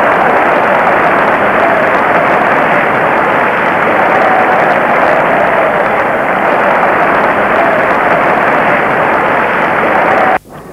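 Large football crowd on the terraces making a loud, steady noise of many voices together, their reaction to a near miss in the goalmouth.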